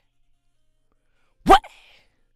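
A rapper's single short shouted "What?" ad-lib on a dry, isolated vocal take about one and a half seconds in, its pitch rising. Before it there is near silence, with no beat under the voice.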